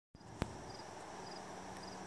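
Faint outdoor ambience: a low steady hiss with a single sharp click about half a second in, and a faint high insect chirp repeating about twice a second.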